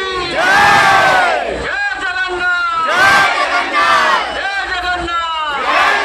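Crowd of men shouting together in loud, repeated group cheers, rising and falling in pitch, about every two to three seconds.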